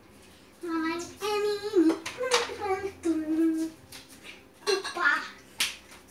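A young child singing long, wavering notes for about three seconds, followed by a few sharp knocks and a short vocal sound near the end.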